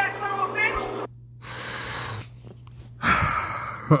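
A voice talking for about the first second, then two short rushes of noise, the second louder, over a steady low hum.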